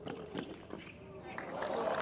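Tennis rally on a hard court: a few sharp racket strikes and ball bounces. Near the end, spectators' voices rise in reaction to a lucky net cord.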